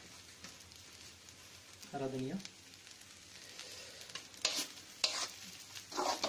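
Wooden spatula scraping and stirring rice in a black wok over a faint, steady sizzle of frying, with two louder scrapes a little past the middle.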